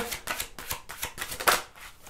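A tarot deck being shuffled by hand: a quick run of light card flicks and snaps, the sharpest about one and a half seconds in.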